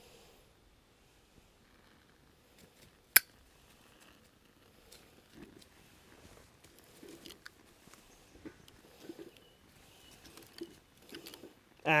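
Fire being lit in a steel fire pit: one sharp click about three seconds in, then faint scattered ticks and rustles as tinder and kindling sticks are handled and the tinder catches.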